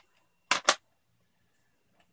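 Two sharp plastic clacks about a fifth of a second apart, from cassette tape cases being handled and set down.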